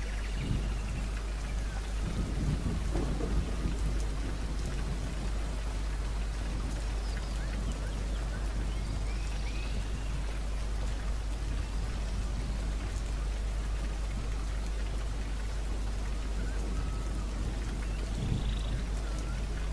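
Steady, even hiss of background noise with a constant low hum underneath; no speech.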